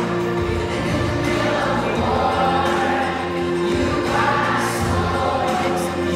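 Children's choir singing a worship song together, with steady instrumental accompaniment underneath.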